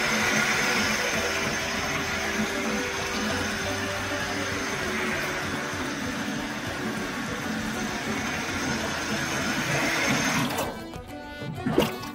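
Water running from a faucet into a stainless steel sink basin, a steady splashing hiss that stops about ten and a half seconds in. A single sharp clack comes near the end.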